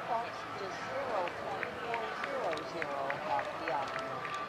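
Indistinct voices talking. From about a second in there are also light, regular clicks, roughly three a second.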